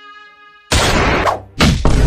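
A gunshot sound effect rings out about two-thirds of a second in, as a held music chord fades away. A second loud bang follows near the end.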